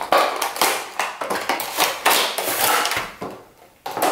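Cardboard retail box being opened and a clear plastic packaging tray slid out: a run of irregular scraping and crinkling rustles of cardboard and plastic, dying away shortly before the end.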